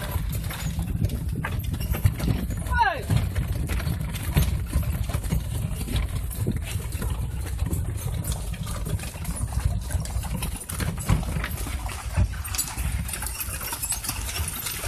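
A ride in a horse-drawn cart on a dirt track: the horse's hooves clip-clop and the wooden cart knocks and rattles over a steady low rumble of the rolling cart.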